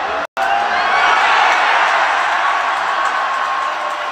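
Arena crowd cheering and yelling, swelling to its loudest about a second in, right after a brief cut-out of the sound.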